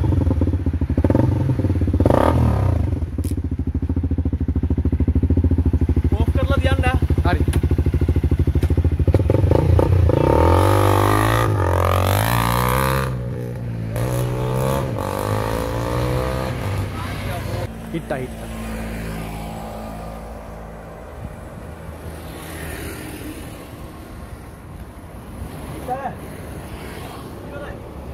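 Honda CRF250L single-cylinder four-stroke engine running steadily close by, then revving up and down as it pulls away, the sound fading after that.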